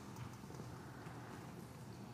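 Faint shuffling and scattered light knocks from a congregation getting up from their seats.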